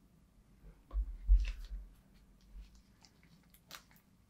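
Quiet handling of a silicone measuring cup over resin molds: a low bump about a second in, then a few light clicks and taps.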